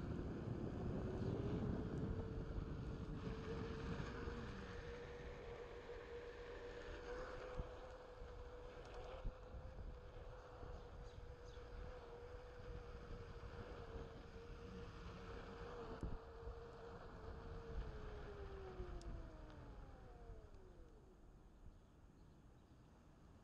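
Onewheel V1 hub motor whining under a low rumble of the tyre on pavement and wind on the microphone. The whine rises in pitch over the first couple of seconds as the board speeds up, holds steady while cruising, and falls away near the end as the board slows.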